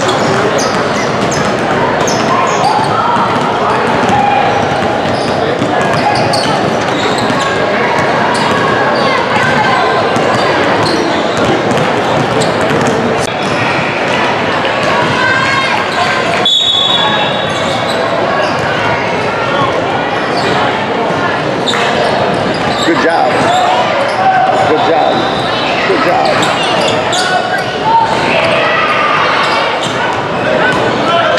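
Basketball gym ambience: many players and spectators talking and calling out at once, with a basketball bouncing on the hardwood floor now and then, all echoing in a large hall.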